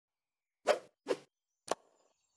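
Three short plop sound effects about half a second apart, the last one sharper, from a logo animation's sound design.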